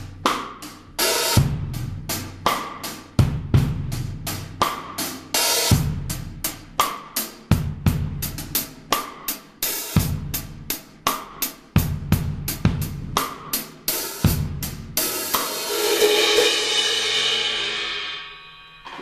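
Drum kit groove at a slow-to-medium tempo, with the hi-hat played half-open: the two cymbals touch loosely and give a rustling wash on every stroke. Kick drum and snare are heard underneath, with the snare hitting about every two seconds. A long sustained cymbal wash near the end fades out.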